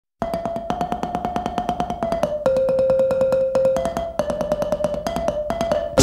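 Mbira played solo at the opening of a Zimbabwean song: a fast, even run of plucked notes, about eight a second, moving between two or three pitches, with brief breaks.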